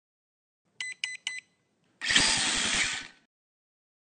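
Logo intro sound effect: three short high electronic beeps in quick succession, then a louder burst of noise about a second long with a fast low pulse running through it, ending abruptly.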